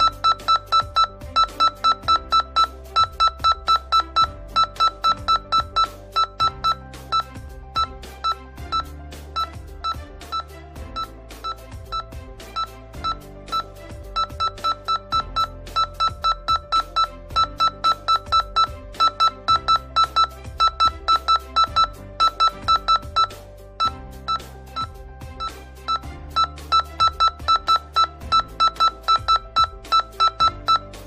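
Handheld electromagnetic radiation meter beeping in a fast, even train of short, identical beeps, about three a second, pausing briefly a couple of times, as its alarm signals a strong field reading close to a laptop and a charging phone. Background music plays underneath.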